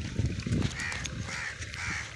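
A crow cawing: a string of short, harsh caws about two a second, starting about a second in.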